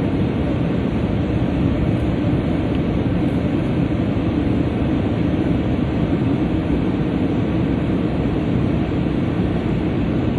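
Steady engine and airflow noise inside an airliner cabin, a constant low rumble with no changes.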